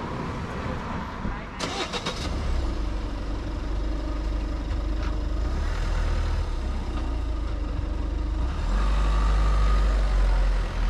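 Motor traffic passing on a road, a steady engine rumble that swells louder near the end. A short burst of clicking and rustling comes about two seconds in.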